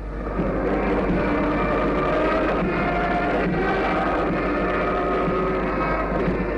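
Band music on an old film soundtrack: long held chords that shift slowly, over a constant low hum.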